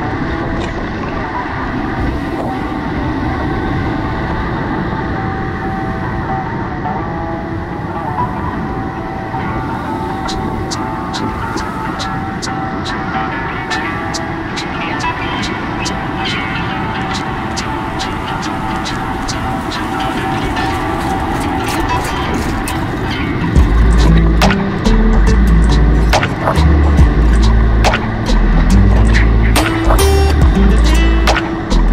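Whitewater of the Cache la Poudre River at about 600 cfs rushing steadily around a kayak in a rapid. About three quarters of the way through, loud music with a heavy bass line comes in over the water.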